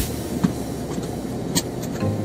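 A seatbelt buckle clicks shut about half a second in, followed by a few lighter clicks near the end, over a steady rushing background noise in a car.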